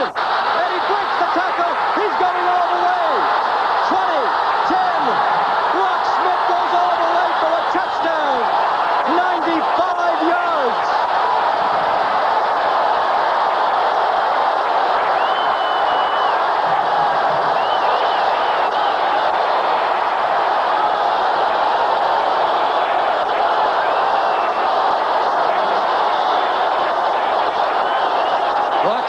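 Stadium crowd cheering loudly and steadily as a kickoff is returned for a touchdown, with individual shouting voices standing out in the first ten seconds or so, heard through an old television broadcast's audio.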